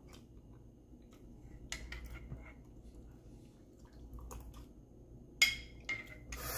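A metal spoon tapping and clinking against a ceramic mug, a few faint taps and then one sharper clink near the end that rings briefly.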